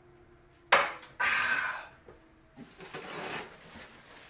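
Two sudden noisy bursts about a second in, then softer rustling: a paper towel torn off its roll and rubbed against the face.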